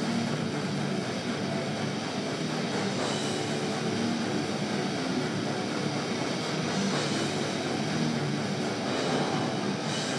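Heavy metal band playing live with guitars and drums, recorded from the crowd as a loud, dense, steady wall of sound.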